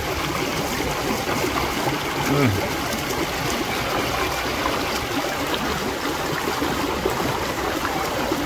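Steady rush of flowing creek water.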